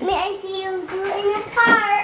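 A small child singing: one long held, slightly wavering note, then a shorter, higher sung sound near the end.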